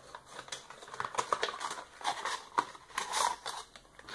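A small cardboard product box being opened by hand: a run of irregular clicks, taps and rustles of cardboard and packaging, busiest around three seconds in.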